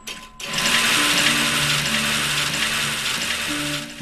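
A steady mechanical whirring starts about half a second in and stops just before the end, with low sustained musical notes beneath it.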